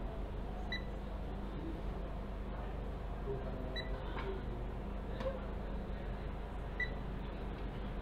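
Electronic refrigerant leak detector beeping at its slow idle rate: three short, high beeps about three seconds apart as the probe passes over the coil, with no leak being picked up. A steady low hum runs underneath.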